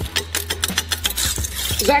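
Serrated blade scraping and clinking against brick and mortar as it is worked in a gouged gap, a quick irregular run of gritty clicks and scrapes.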